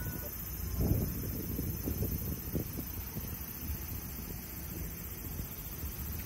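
Wind buffeting the microphone in a low, gusty rumble, with the strongest gust about a second in and smaller ones around two seconds.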